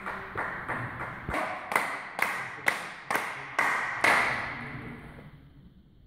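Table tennis ball bounced again and again on the table, sharp clicks at a steady rate of about two a second that stop about four seconds in.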